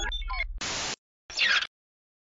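Electronic outro logo sting: a low buzzing hum under short tones that slide in pitch, then a burst of static hiss, a brief gap, and a second short burst of static about one and a half seconds in.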